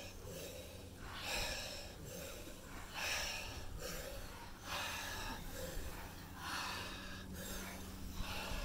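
A person in an ice bath breathing hard through pursed lips to cope with the cold, a series of forceful exhales recurring about every second or two.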